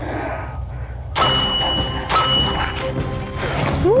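Two pistol shots about a second apart, each followed by a lingering ring from a steel plate target, over background music.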